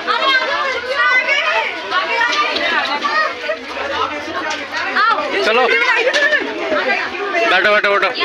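Several people talking over one another, children's voices among them, with no single speaker standing out.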